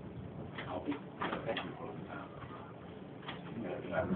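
Indistinct talk from several people in a crowded room, with short bursts of voices coming and going.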